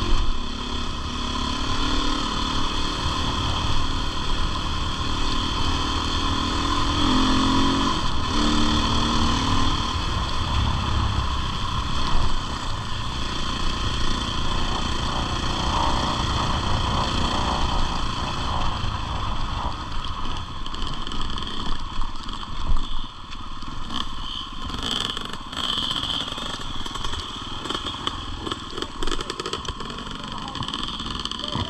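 KTM enduro motorcycle engine running under throttle along a rough dirt track, its pitch stepping up and down with throttle and gear changes. It eases off in the last third, with clatter from the bike over rough ground.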